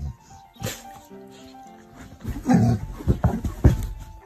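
Background music, with a dog giving several short, low vocal sounds in quick succession in the second half.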